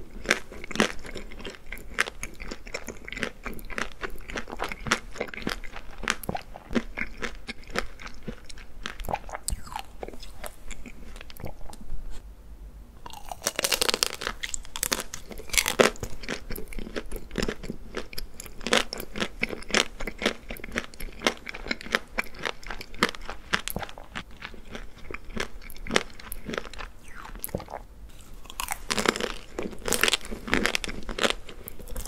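Close-miked eating of a chocolate-coated treat: a crisp chocolate shell crunching and crackling between the teeth, then wet chewing. Louder crunchy bites come about halfway through and again near the end.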